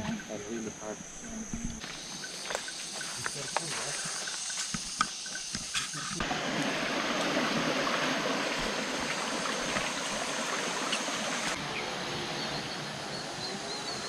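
Outdoor ambience: a steady high insect drone with scattered clicks, then from about six seconds in the even rush of a small stream running over rocks.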